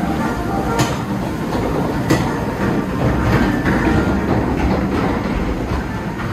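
Log flume boat being carried up a chain lift hill: the lift conveyor rattles and rumbles steadily, with two sharp clanks about one and two seconds in.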